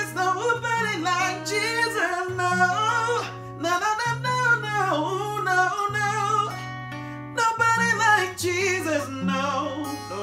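Faith cutaway acoustic guitar, capoed, playing sustained chords and bass notes while a man sings a wavering melody over it.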